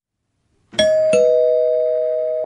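Two-note doorbell ding-dong chime: a higher note about two-thirds of a second in, then a lower one a third of a second later, both ringing on.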